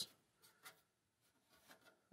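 Near silence, with a few faint small clicks.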